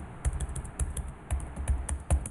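Computer keyboard typing: about a dozen quick, unevenly spaced keystrokes.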